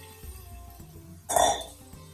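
Background music with a steady bass line, and one short, loud clink about one and a half seconds in as a metal mixing bowl knocks against a stainless steel pressure cooker pot.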